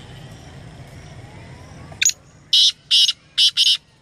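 Male black francolin calling: a short opening note about halfway through, then four loud, harsh notes in quick succession, roughly half a second apart.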